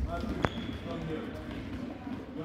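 A single sharp thump of a soccer ball on a gym's hardwood floor about half a second in, ringing in the large hall, amid children's voices.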